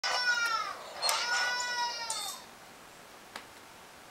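Two long, high-pitched wailing calls, the second longer, each falling in pitch at the end, followed by a faint click.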